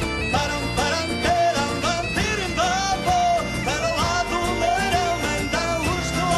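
Gaita-de-foles (Iberian bagpipe) playing an ornamented melody over its steady drone, with a folk band of guitars, bass and hand percussion accompanying.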